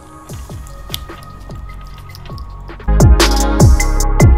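Electronic background music with a beat of repeated falling bass notes and short high ticks. It gets much louder and fuller about three seconds in.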